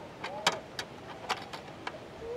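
Sharp metallic clicks and clinks from a folding stainless-steel camp stove being opened out and handled, about five in two seconds, the loudest about half a second in.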